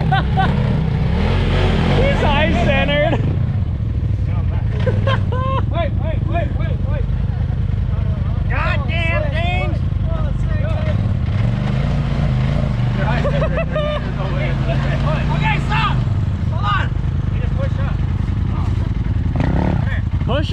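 An off-road vehicle engine runs steadily at low revs, its pitch rising and falling slowly in the second half, while people's voices call out over it.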